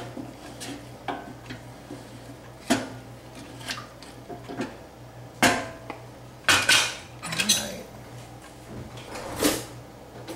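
Wooden spoons knocking and scraping against an enamelware roasting pan as a pork roast is turned over in it, with scattered sharp clatters, the loudest about halfway through.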